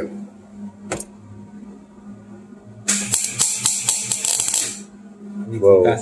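MIG welding arc on stainless steel crackling in one burst of about two seconds in the middle, over a faint steady hum. The welder is set too cold: it needs more heat, and the bead is stacking up on the surface without penetrating.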